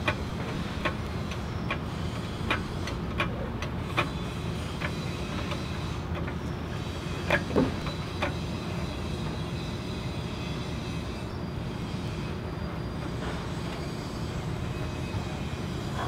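A jack being pumped up under the truck's front control arm to lift the wheel. Light metallic clicks come about once a second for the first five seconds, then two louder clanks about halfway, over a steady low background hum.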